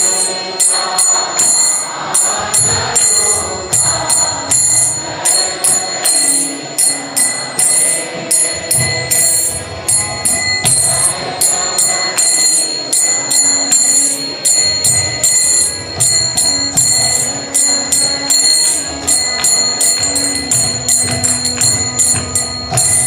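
Instrumental interlude of devotional kirtan: small brass hand cymbals (kartals) struck in a steady, even beat, ringing between strokes, over sustained accompanying instrument notes.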